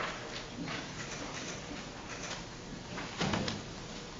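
Background noise of a meeting room while people move about at the front, with faint off-microphone voices and one brief louder voice about three seconds in.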